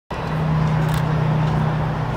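A steady low mechanical hum, one held tone with a rushing noise around it.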